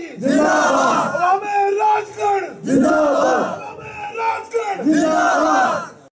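Rally crowd shouting slogans in unison, about five loud chants in quick succession.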